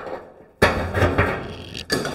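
A sudden rough scraping rattle lasting about a second, then a sharp knock, as hinge parts of a truck's tilt front end are worked with pliers.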